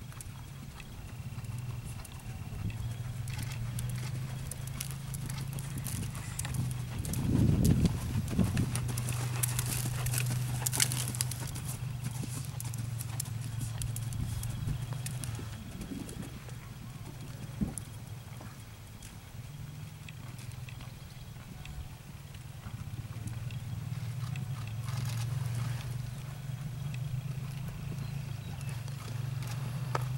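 Horse's hooves on sand and fibre arena footing during a dressage test, a soft, muffled beat at the trot. A steady low hum runs underneath, with one louder burst about seven seconds in.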